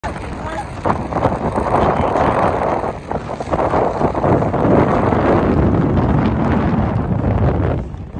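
Strong wind buffeting the microphone in a loud, continuous rumble, with a few short knocks from steps in shallow water over wet sand in the first few seconds.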